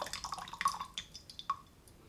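Tea draining from a tilted porcelain gaiwan into a glass pitcher, the thin stream breaking into drips that grow sparser. Single drips fall about a second and a second and a half in.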